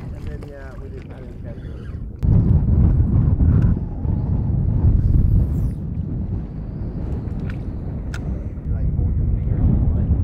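Wind buffeting the microphone: a low, uneven rumble that comes in abruptly about two seconds in and carries on in gusts, with a couple of faint clicks near the end.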